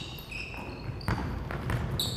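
A basketball being dribbled on a hardwood gym floor, a few separate bounces, with short high sneaker squeaks from players cutting.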